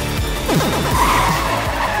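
Mitsubishi Triton pickup's tyres skidding and squealing as it swerves at high speed, screeching most loudly about a second in.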